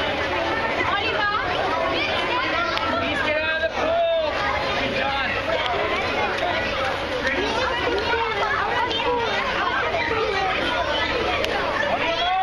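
Crowd of children chattering, many voices overlapping, with one louder call about four seconds in.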